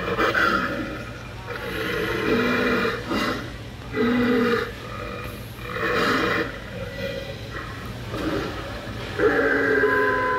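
Animatronic werewolf Halloween prop playing recorded growls and snarls through its small speaker, in about five separate bursts.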